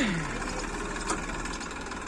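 Massey Ferguson 241 DI tractor's three-cylinder diesel engine running steadily at low revs.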